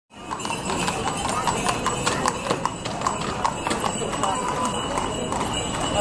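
Hooves of a horse pulling a carriage, clip-clopping in a quick, uneven run of sharp knocks, with voices in the background.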